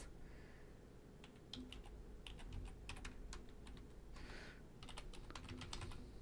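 Typing on a computer keyboard: a scatter of faint, irregular key clicks, starting about a second and a half in.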